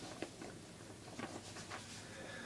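Faint handling of sheets of paper: a soft rustle with a few light clicks.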